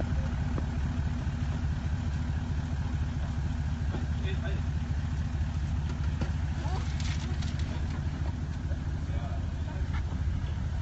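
Four-wheel drive's engine running steadily at low revs as the vehicle crawls down into a deep washout, with a few light knocks about seven seconds in.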